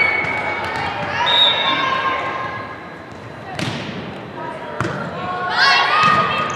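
A volleyball being struck twice, about three and a half seconds in and again about a second later, amid players and spectators calling out with high, held voices in a large gym.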